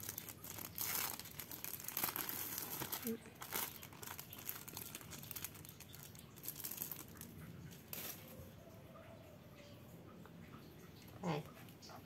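Thin clear plastic film crinkling as an individually wrapped processed cheese slice is peeled open by hand. The crackling comes in bursts over the first few seconds and again past the middle.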